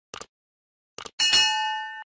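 Sound effects for a subscribe-button animation: a short double mouse click, another click about a second in, then a bright bell ding that rings on with several tones, fading slowly.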